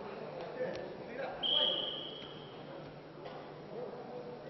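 A referee's whistle blows once, a single steady high note lasting about a second, over the chatter of spectators.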